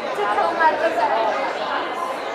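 Chatter of several people talking over one another at tables in a room, no single voice standing out.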